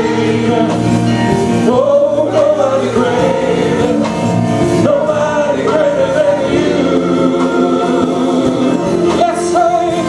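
Gospel praise team of women's and a man's voices singing a worship song in harmony through microphones, with electric keyboard accompaniment holding sustained chords.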